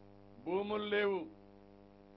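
A man's voice speaking one short phrase into microphones, starting about half a second in and lasting under a second. A steady electrical mains hum sits under it.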